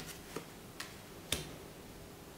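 Four faint, unevenly spaced clicks, the loudest about a second and a third in.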